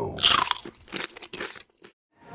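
Crunching of a tortilla chip: one loud bite-crunch, then a quick run of smaller crunches that stops about a second and a half in.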